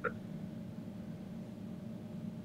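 Quiet room with a steady low hum while a man silently holds back tears. There is one brief, faint catch in his voice right at the start.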